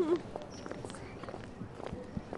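Footsteps of several people walking on a paved path: light, irregular steps.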